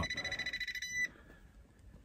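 Southwire non-contact AC voltage detector beeping in a fast, high-pitched pulse, signalling live 120-volt power at the output of the newly replaced furnace switch. The beeping cuts off about a second in.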